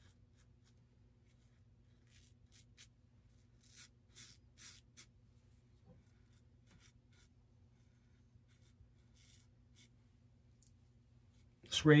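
Timeless Titanium open-comb safety razor scraping through lathered beard stubble: a series of faint, short strokes, most of them in the first half.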